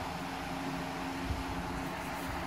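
A steady low mechanical hum under a hiss of background noise, with one soft knock a little past halfway.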